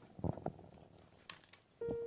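Faint scattered knocks and rustles of handling, then near the end a Casio Privia digital piano starts a held note, the opening of a song.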